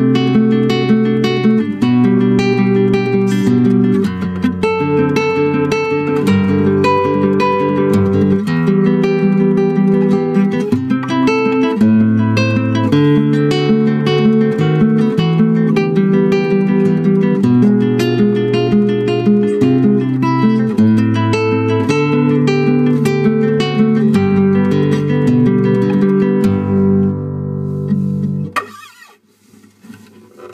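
Acoustic guitar being played with plucked notes and chords, picked up from inside the guitar's body. The playing stops about a second and a half before the end.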